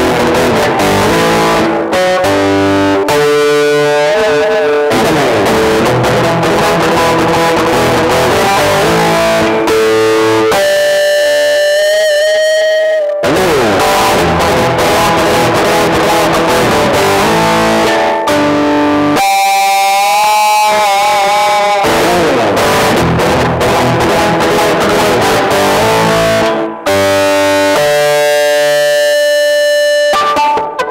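Electric guitar played with distortion: a rock passage of chords and single notes, with held notes wobbled and bent in pitch, a stand-in for a tremolo bar. Twice the held notes waver noticeably, about a third of the way in and again just past the middle.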